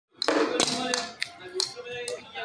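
Sharp taps of a light ball striking a plastic cricket bat and bouncing on concrete, about five in under two seconds, the first two the loudest, with children's voices.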